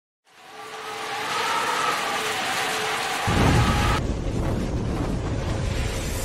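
Intro sound effect of rain and thunder: a rain-like hiss fades in over the first second, and a deep thunder rumble comes in just after three seconds.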